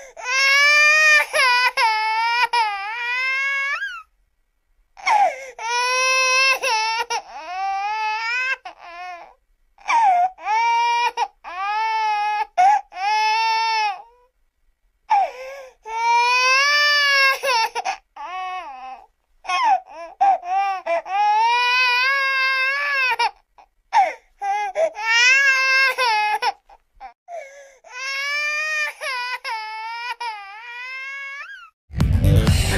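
A baby wailing: a run of long, high-pitched cries of one to three seconds each, rising and falling in pitch, with brief breaks for breath between them.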